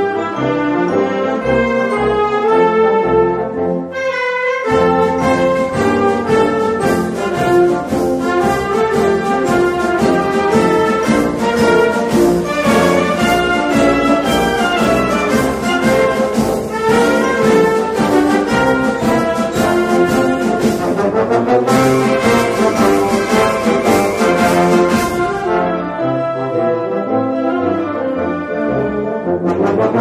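Concert band playing a brisk march, led by the brass. The full band with percussion comes in about five seconds in, and the sound thins to a lighter passage near the end.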